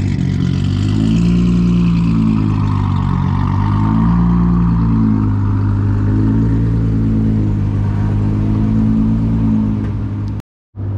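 Modified Nissan GT-R's twin-turbo V6 running stationary, its exhaust noisy, holding a steady low note whose pitch wavers slightly up and down.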